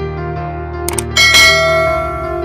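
Background piano music, with a quick double click about a second in followed by a bright bell ding that rings out: the sound effect of a subscribe-button animation being clicked.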